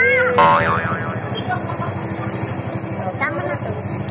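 A short cartoon-style 'boing' sound effect, a warbling tone that wobbles up and down for about half a second just after the start. Under it runs a steady low engine rumble, with a brief voice at the start and faint talk later.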